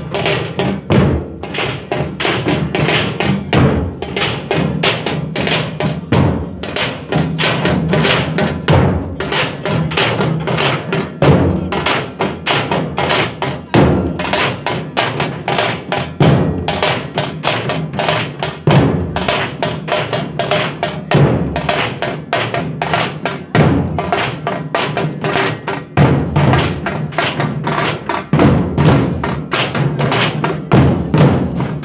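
A troupe of large dhol barrel drums, beaten with sticks, playing together in a loud, steady, driving rhythm of dense strokes.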